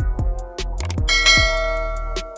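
Electronic background music with a steady drum-machine beat; about a second in, a bright bell chime rings out for about a second, the sound effect of a subscribe-button animation.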